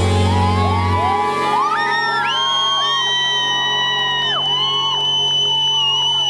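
A pop band's closing held chord at a live outdoor concert, with many audience voices screaming and whooping over it, several rising high cries that are sustained and overlap.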